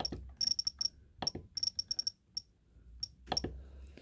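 Jeti DS-24 radio transmitter beeping as its selector wheel steps the cursor across the on-screen keyboard: many very short, high-pitched beeps, in quick runs of a few at a time and then singly, with faint clicks as letters are entered.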